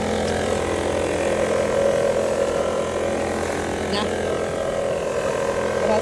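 Backpack leaf blower's engine running steadily, a constant drone that doesn't change in pitch.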